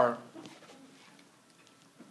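A man's voice draws out one falling word at the start, then a faint room hush until the speech picks up again.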